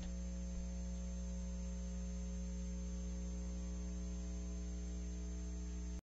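Steady electrical mains hum with a faint hiss and a thin high steady whine on the broadcast audio line, with nothing else heard.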